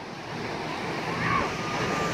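Steady wash of surf and wind heard from high above the beach, slowly building, with some wind noise on the microphone.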